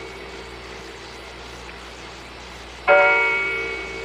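Slow, evenly spaced strokes of a clock's bell chime striking the hour. One stroke's ring fades away at the start, and the next strikes about three seconds in and rings out slowly.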